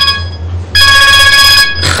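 Telephone ringing with an electronic ring of several steady tones sounding together, switched on and off: one ring ends just after the start and another lasts about a second. It is an incoming call that is answered moments later.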